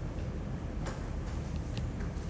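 A few light taps of a stylus tip on a tablet's glass screen, the clearest a little under a second in, over a steady low background hum.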